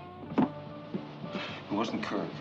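Film soundtrack: background music with sustained notes under indistinct voices, with a single sharp knock about half a second in.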